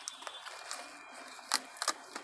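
Outer leaves being snapped off a freshly harvested cabbage head by hand: crisp snaps, the sharpest two about a second and a half in and just before the end.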